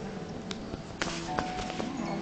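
Quiet passage from an Arabic music ensemble with oud, a few faint held notes sounding, broken by several sharp knocks and taps, the loudest about a second in.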